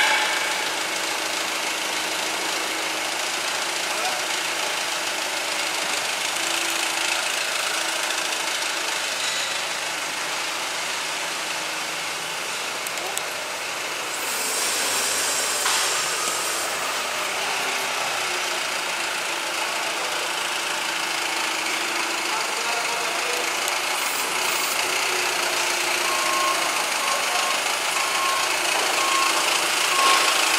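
Yale forklift engine running steadily, with a low hum that comes and goes. Near the end comes a string of short evenly spaced beeps.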